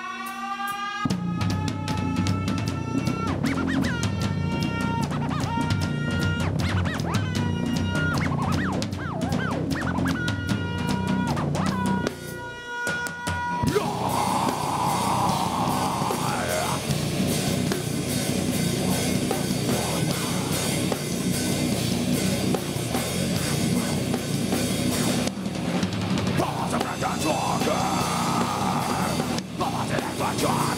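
Live heavy rock band with electric guitar, bass guitar and drum kit playing: for the first twelve seconds a guitar picks out a line of held, sometimes bending notes over bass and drums, then after a brief break near twelve seconds the full band comes in heavy and dense.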